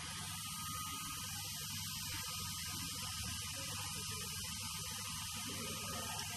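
Steady electrical hum with a hiss over it, unchanging throughout; no distinct sounds of the suturing are heard.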